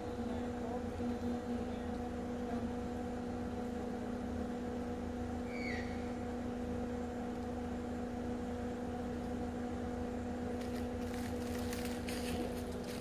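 A steady low mechanical hum, with one short high chirp about six seconds in.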